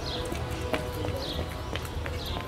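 Footsteps on a paved street, a few sharp steps about a second apart, under background music of held tones. A short falling chirp repeats high up about once a second.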